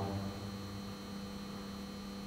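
Steady electrical mains hum, a low drone with a few faint higher steady tones above it.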